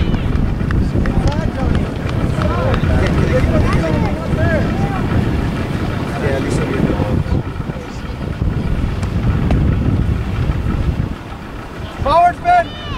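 Wind buffeting the microphone in a loud, steady low rumble that eases a little near the end, with faint distant shouts from the soccer players and sideline.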